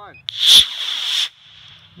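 Estes AstroCam model rocket's B6-4 black-powder motor igniting with a sudden loud whoosh about a quarter second in, then a hissing burn of about a second that cuts off abruptly as the rocket climbs away.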